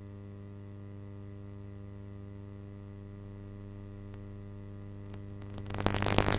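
Steady electrical mains hum with a stack of buzzing overtones from blank VHS tape playback. A much louder, harsh noisy sound starts abruptly just before the end.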